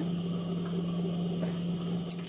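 Steady low hum of an industrial sewing machine's electric motor left running while the machine is idle, with a couple of faint light ticks.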